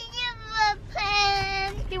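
A young child's voice singing or sing-songing two long drawn-out notes, each sliding slightly down in pitch.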